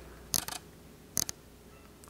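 Light clicks from the controls of a Sony A7S camera being worked, in two small groups about a second apart, as the lens aperture is opened all the way up.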